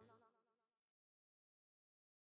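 Near silence: the reggae track has faded out, leaving only a barely audible trace of its last notes in the first second, then digital silence.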